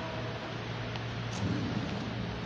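Steady whooshing noise of electric standing fans running, with a low rumble and a faint steady hum.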